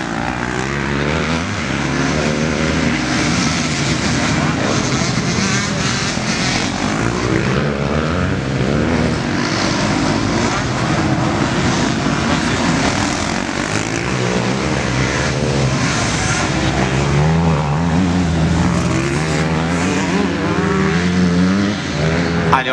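Several motocross bike engines revving up and down as riders pass, their pitches overlapping and shifting throughout, loudest in the second half.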